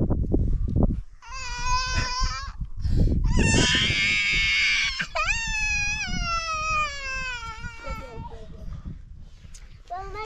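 A child crying in three long, drawn-out wails, the loudest in the middle and the last one sliding down in pitch as it fades.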